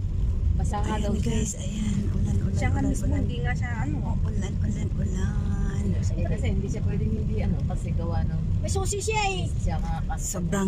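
Steady low rumble of a car driving on a flooded, rain-soaked road, heard from inside the cabin, with people talking over it.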